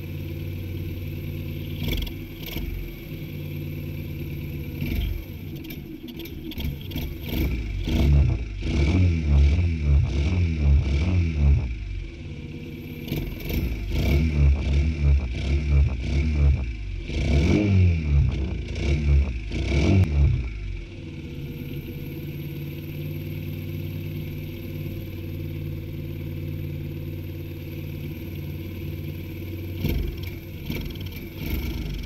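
Honda Gorilla's small four-stroke single-cylinder engine idling, then revved in a series of throttle blips from about eight seconds in until about twenty-one seconds, the revs rising and falling each time, before it settles back to a steady idle. The engine is being run during carburettor adjustment, and the fuel-air mixture is blowing back out through the carburettor.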